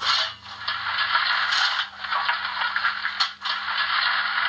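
Shaking-grate (rocking grate) sound effect from the Märklin 39009 BR 01 model locomotive's mfx+ sound decoder: a metallic scraping rattle in repeated strokes, about one every second and a half, with short breaks between. It imitates the firebox grate being shaken to drop ash.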